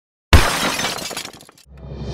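A sudden crash of glass shattering, with scattered tinkling pieces dying away over about a second, used as a logo-intro sound effect. Low music starts near the end.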